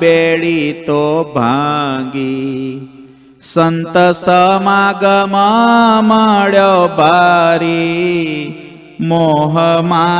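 A man's solo voice chanting a devotional verse in Gujarati in drawn-out melodic phrases, with long held notes. He breaks for breath about three seconds in and again near the end.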